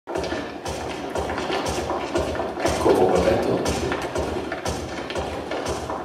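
Music with a steady beat of sharp knocks about twice a second over a dense mid-range backing.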